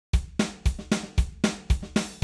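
Drums come in just after a brief silence and play a steady beat: a deep kick about twice a second, with sharper snare and cymbal hits in between, forming the instrumental intro to a song.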